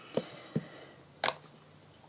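Ink pad dabbed onto a clear photopolymer stamp and the stamp picked up: two faint taps, then one sharper click a little over a second in.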